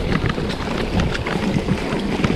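Mountain bike rolling down a rough dirt singletrack: wind buffeting the rider-worn camera's microphone over a low tyre-and-trail rumble, with frequent light rattles and clicks from the bike over bumps.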